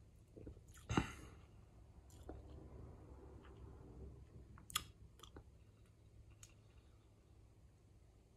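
Quiet sounds of a person drinking soda from a plastic bottle and tasting it: swallowing and wet mouth noises, with a sharp smack about a second in and a shorter click a little past the middle.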